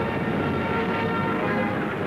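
A steady rumbling roar of wartime battle noise, the sound of shellfire and explosions laid over archival footage. Faint music begins to come in under it near the end.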